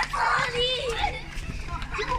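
Several young children's high voices calling out over one another while playing a game together.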